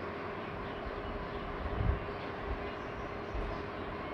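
Steady low background rumble with a faint constant hum, and a soft thump about two seconds in.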